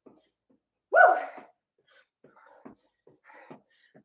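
A woman's short, loud vocal call with falling pitch about a second in, then faint breathing and soft footfalls on a rug-covered floor during quick high-knee hops.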